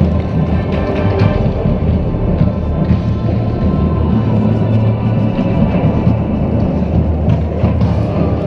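Marching band playing, with a heavy, sustained low end of brass and drums, picked up by a camera riding on a color guard flag pole. Scattered small knocks from the pole's handling sound through the music.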